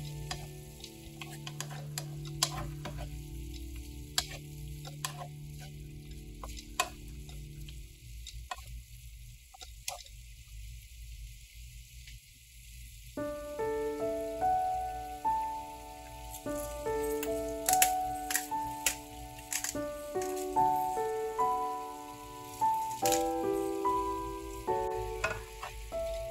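Napa cabbage, carrots and mushrooms sizzling in a non-stick wok as a wooden spatula stirs them, with scattered clicks and scrapes of the spatula against the pan. Background music with a melody comes in about halfway through.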